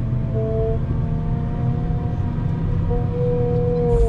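Wheel loader engine running under load while it pushes grass into the silage clamp with a silage distributor: a steady low rumble with a whine that shifts slightly in pitch now and then.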